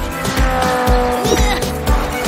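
Upbeat background music with a steady beat, over cartoon race-car sound effects: a toy race car zooming along with a tyre squeal.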